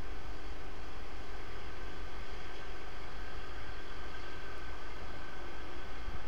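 Steady low mechanical hum with hiss, unchanging throughout, with faint steady tones in it.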